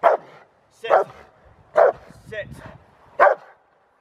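A Rottweiler barks in protection training. There are four loud, sharp barks spaced about a second apart, with a softer one between the third and the fourth.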